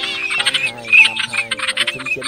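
A flock of wild ducks calling, a teal lure recording: rapid high calls repeated many times, several overlapping, over a steady background of held tones.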